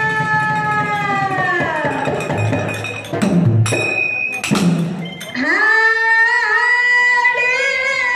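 A woman singing a Kannada devotional folk song (dollina pada) through a microphone, holding a long note that falls away about two seconds in. A few sharp percussion strikes follow around the middle, then she rises into another long held note with a slight waver.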